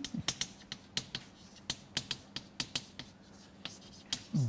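Chalk on a blackboard while a word is written by hand: an irregular run of sharp taps and short scratches, several a second.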